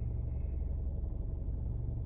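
Steady low rumble of a car idling, heard from inside the cabin, with a faint steady hum above it.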